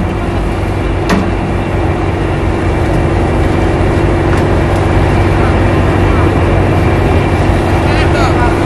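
Boat's engine running with a steady hum, under a wash of wind and sea noise, and a single sharp click about a second in.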